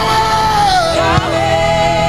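Live gospel praise-and-worship music: a male singer holds long, wavering notes over the band, stepping down in pitch about two-thirds of a second in.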